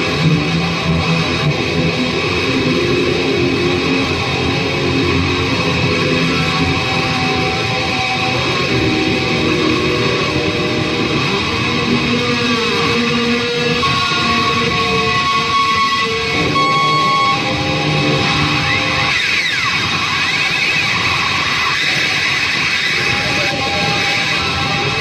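Distorted electric guitar, an EVH Shark, played loud in a heavy-metal shred style: fast lead runs mixed with held, sustained notes and a few notes bent or slid in pitch about three quarters of the way through.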